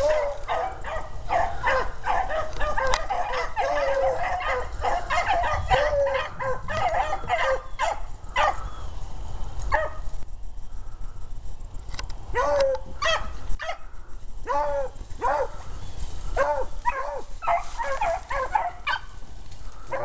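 A pack of beagles baying in full cry on a rabbit's scent trail: many overlapping bawls and short barks. The cry thins briefly about halfway through, then picks up again.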